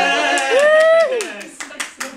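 A low note blown across a beer bottle trails off at the start. A voice slides up, holds and drops away, and a quick run of hand claps follows.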